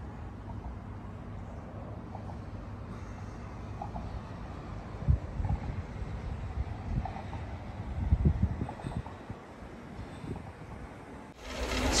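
Low, steady outdoor rumble with a few soft thumps, the strongest about five and eight seconds in, and faint short high notes here and there.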